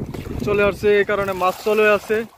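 A voice singing a short phrase over and over on steady, held notes.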